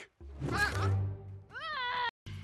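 A cartoon rooster squawking in alarm while being held up by the legs: a harsh cry about half a second in, then a pitched call that rises and falls near the end, over film score music.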